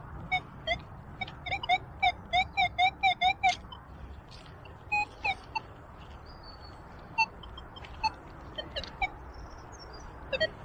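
Metal detector giving target tones as its coil is swept over the ground: a quick run of short, same-pitched beeps, about four a second, in the first few seconds, then scattered single beeps, a few of them slightly higher.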